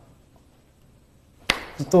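A pause in a man's interview speech: faint room tone, then a single sharp click about a second and a half in as his voice starts again.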